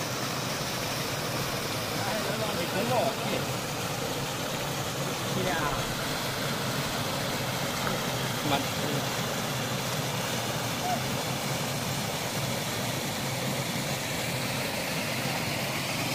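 Stream water rushing steadily over a small rocky cascade.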